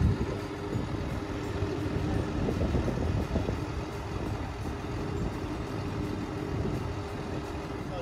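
Caterpillar D6N crawler dozer's diesel engine running steadily as the dozer crawls across bare dirt on its tracks.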